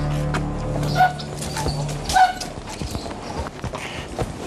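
Background drama music with a sustained low note that fades out about halfway, over footsteps on hard paving and the knocks of a heavy wooden gate being pushed open. Two short squeaks come about a second apart.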